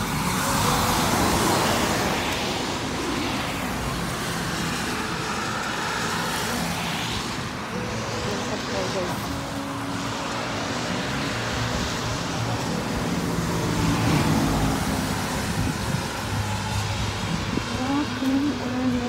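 Road traffic: cars passing by on a street, swelling past about a second in and again around six seconds, with voices faintly in the background.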